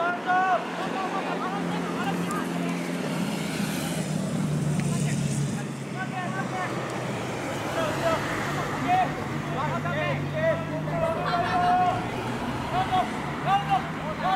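Voices shouting short calls across a football pitch during play, scattered throughout and more frequent in the second half. A low steady drone of a vehicle engine runs underneath, loudest around the middle.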